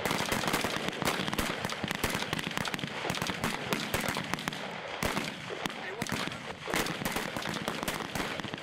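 A firing line of M16A2 service rifles shooting: many single shots from several rifles overlapping in an irregular stream, several a second.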